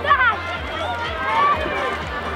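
Several voices shouting and calling out over a steady outdoor crowd hubbub.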